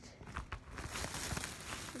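A plastic shopping bag rustling and crinkling as a hand rummages in it, with a few small knocks, louder from about half a second in.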